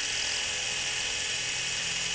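Surgical power wire driver running steadily as it drives a guide pin through the clavicle plate into the coracoid process, a continuous high whir.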